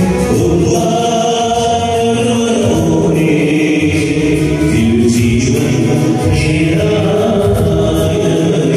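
A church choir singing a slow hymn, with long held notes.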